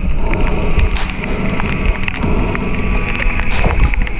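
Underwater sound through a submerged action-camera housing: a dense low rumble of moving water with scattered crackling clicks and a couple of sharper cracks.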